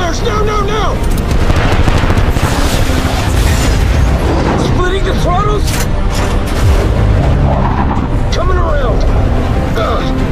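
A loud film action soundtrack: heavy jet fighter roar with booms, mixed under dramatic music, with short shouted calls between the pilots near the start, about five seconds in and near the end.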